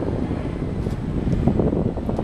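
Chevrolet 350 V8 idling, a steady low rumble, with some wind noise on the microphone.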